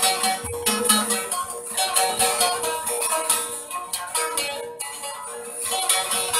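Turkish folk music played on a plucked string instrument: quick runs of picked notes over a steady held tone, the instrumental introduction before the singing comes in.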